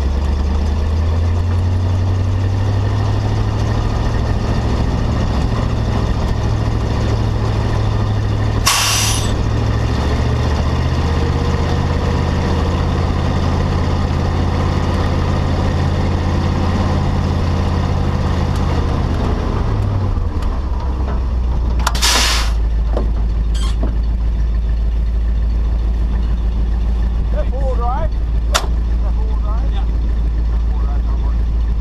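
Tow truck engine running at steady revs as the truck drives across the sand, dropping back to idle about two-thirds of the way in as it pulls up. Two short sharp hisses of air, one about a third of the way in and one shortly after the engine drops, typical of the truck's air brakes.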